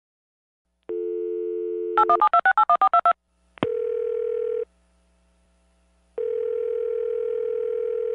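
Telephone line sounds: a dial tone starts about a second in, then about ten quick push-button dialing tones, a click, and two steady single tones with a gap between them, the line ringing.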